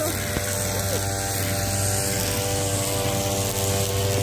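A steady, low electrical hum with a buzzing edge, holding one pitch throughout.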